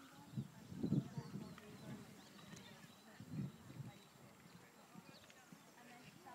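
Distant horse's hooves thudding on a sand arena surface, a few dull beats about half a second and a second in and again near the middle, faint overall.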